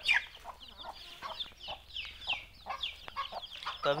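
Desi chickens calling: a run of short, high, falling cheeps from young chicks, with an occasional lower cluck from a hen. One call right at the start is louder than the rest.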